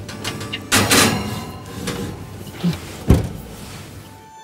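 A wall oven being loaded: the oven door opens and the dish goes in with a rush of sliding and handling noise about a second in, then the oven door shuts with one sharp bang a little after three seconds.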